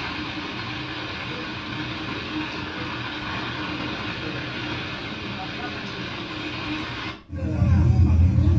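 Fast-flowing muddy floodwater rushing, heard as a steady, even roar. About seven seconds in it cuts off abruptly and a louder, deeper rumble takes over.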